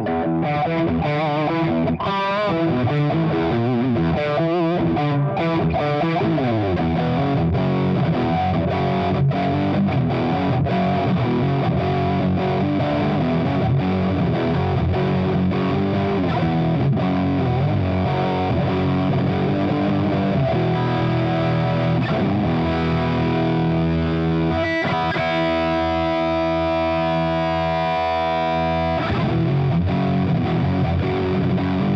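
Electric guitar played through the Hughes & Kettner Grandmeister Deluxe 40 amp's Ultra channel, its high-gain metal channel: heavily distorted riffs and lead lines, ending in a long held chord that rings for about four seconds before being cut off near the end.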